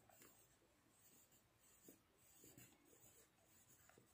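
Very faint scratching of a pen writing a word by hand on workbook paper, heard over near silence.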